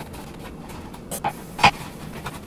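Kitchen knife slicing garlic cloves on a cutting board: a few scattered knocks of the blade against the board, the loudest about three-quarters of the way through.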